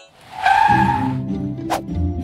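A brief noisy cartoon sound effect with a whistling tone, lasting about half a second, like a skid. Background music chords come in after it, and there is a sharp click near the end.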